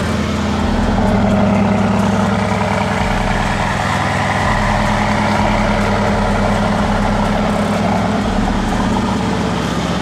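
Mercedes-AMG GT's 4.0-litre twin-turbo V8 idling steadily.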